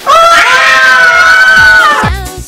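A very loud, high-pitched screech held at a nearly steady pitch for about two seconds, starting abruptly and cutting off suddenly.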